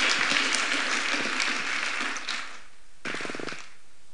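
A congregation applauding, the clapping dying away about two and a half seconds in.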